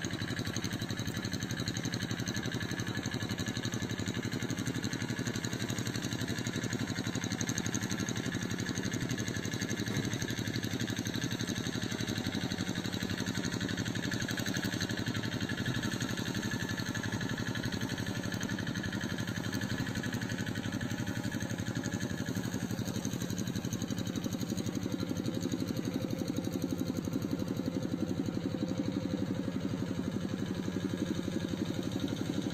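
Rice combine harvester's engine running steadily at idle while the machine stands still, an even hum with no revving.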